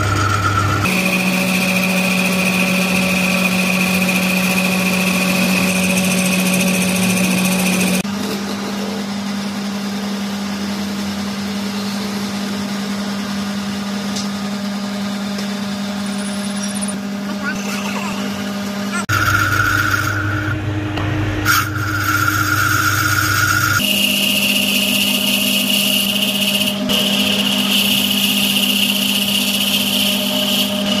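Wood lathe running, a steady motor hum with a high whine, while a turning tool cuts a spinning wooden handle and, in the middle stretch, a drill bit bores into its end. The sound changes abruptly several times.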